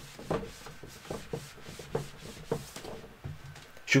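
A cloth wiping marker off a whiteboard: a run of quick rubbing strokes back and forth across the board's surface.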